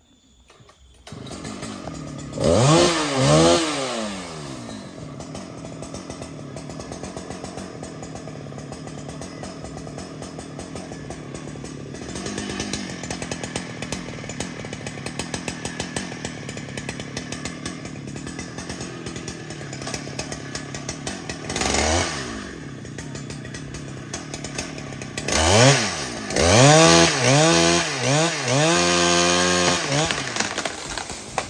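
Husqvarna 395 XP two-stroke chainsaw coming in about a second in and revving up and down, then running at a lower steady speed with one brief rev. From about 25 s on it revs high and steadily, cutting into a limb up in the tree.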